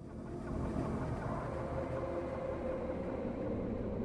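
A steady, dense rumbling drone that swells in over the first half-second and then holds level.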